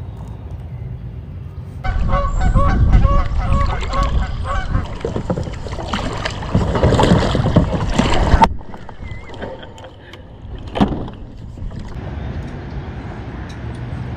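Canada geese honking in a rapid series of short calls over low wind rumble, starting about two seconds in and cutting off suddenly about six seconds later.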